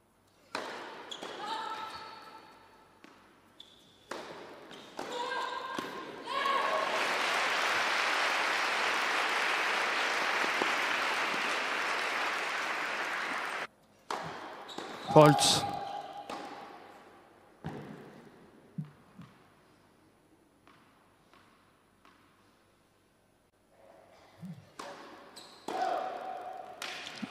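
Crowd applauding at a tennis match for about seven seconds, cut off abruptly. Later a tennis ball is bounced on the court a few times, short sharp knocks that die away.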